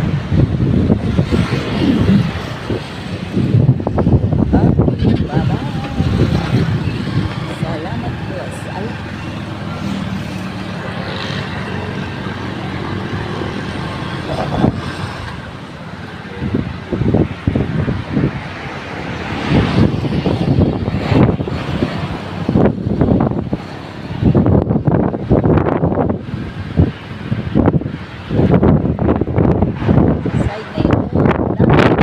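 Engine and road noise from a moving vehicle on the road, with wind buffeting the microphone in irregular gusts, steadier for a stretch in the middle.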